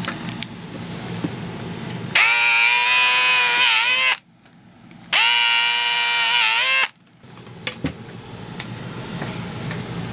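Cordless drill running in two bursts of about two seconds each, a steady high whine as the twist bit bores mounting holes through a cured epoxy busbar base; the pitch dips briefly just before each stop.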